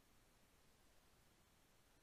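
Near silence: a faint, steady hiss with no distinct sound.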